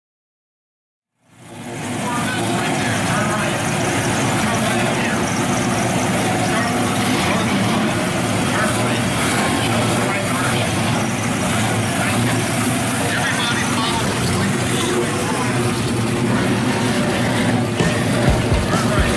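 A 1965 Chevelle SS's engine running steadily as the car drives slowly past, with voices in the background. The sound comes in suddenly about a second in.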